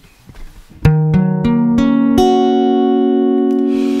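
Steel-string acoustic guitar in an alternate open tuning (E G# B F# B Eb) with a capo at the seventh fret, a chord picked one string at a time from low to high. Five notes start about a second in, roughly a third of a second apart, and ring on together.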